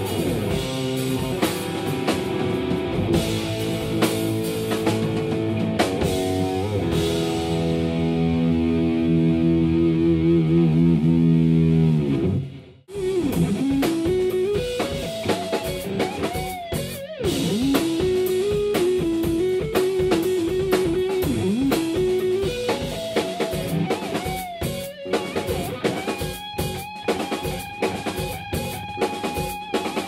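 Rock band playing instrumental music: an Ibanez S-series Prestige electric guitar, overdriven through a Cornford MK50 amp, over a drum kit. A held chord cuts off suddenly about halfway through, then the guitar plays a lead line that bends and glides in pitch, ending on a long sustained high note.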